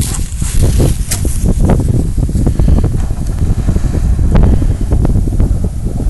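Wind buffeting the phone's microphone, a loud, steady low rumble, with grass rustling and a few brief knocks.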